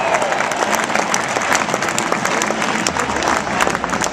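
Large stadium crowd applauding, a dense, continuous wash of clapping from thousands of hands.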